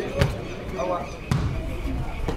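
Two dull thuds of a football being struck, about a second apart, among players' voices on the pitch.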